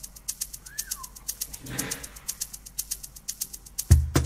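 Drum machine playing a fast shaker or hi-hat pattern, about eight sharp ticks a second. About a second in there is a short rising-then-falling tone. A deep kick drum comes in right at the end.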